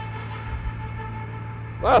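Ginetta G56 GTA's 3.7-litre Ford Cyclone V6 idling with a steady low hum, heard inside the cockpit; a man's voice comes in near the end.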